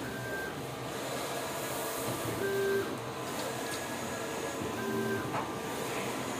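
Large-format flex printer running, with a short motor whine about every two and a half seconds over a steady mechanical hiss.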